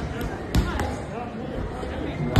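Gloves and shins striking Muay Thai pads: a quick run of about four sharp slaps in the first second.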